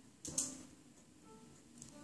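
Faint piano practice: single notes played slowly one after another. A sharp click comes about a third of a second in.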